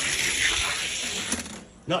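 Two Hot Wheels die-cast cars rolling fast down a gravity drag-race track: a steady rushing rattle of small wheels on the track. It dies away about 1.7 seconds in as the cars reach the finish gate.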